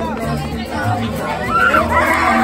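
Mariachi band playing, with violins and a plucked bass line of separate low notes, under loud crowd chatter.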